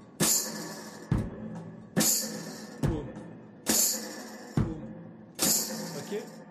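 One-man-band beat: a foot-pedalled bass drum struck together with a thumbed bass note on the guitar ('poum'), alternating with a guitar strum and a foot-played hi-hat fitted with a tambourine ('tchak'). The two alternate evenly, a little under a second apart, four tchaks and three kicks in all.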